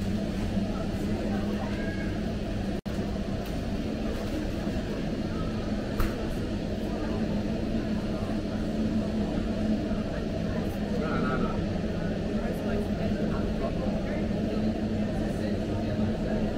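Busy warehouse-store ambience: a steady low hum of refrigeration and ventilation machinery under indistinct shoppers' chatter, with a few faint clicks and a brief dropout in the sound about three seconds in.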